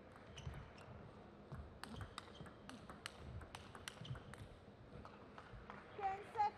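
A table tennis rally: the plastic ball clicking off the rackets and the table in quick succession, about a dozen sharp ticks over three seconds, heard faintly in a large hall.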